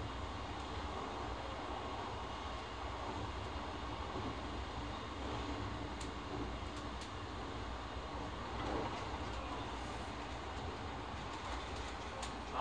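Cabin noise of an Odakyu 4000 series electric train running between stations: a steady rumble of wheels on rails, with a few faint clicks.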